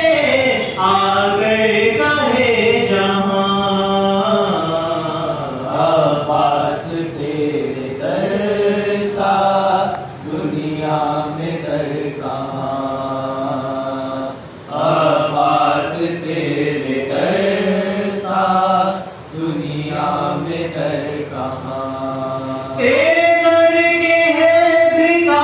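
A young male voice chanting an Urdu devotional poem in praise of Abbas, without instruments, in long melodic phrases broken by short breaths; it grows louder about a second before the end.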